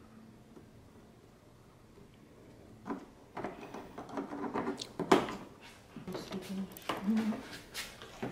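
Sharp plastic clicks and knocks, starting about three seconds in, as a push-pin clip is pried out of a Mustang GT's plastic front bumper cover with a screwdriver and a plastic trim tool, and the loosened bumper cover knocks as it is pulled away. Short low murmurs of voice come in between.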